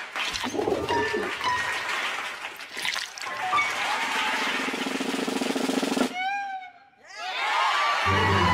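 Cartoon soundtrack of music and comic sound effects for a stage magic trick. Near the end it breaks into a run of quick rising-and-falling whistle glides that lead into music.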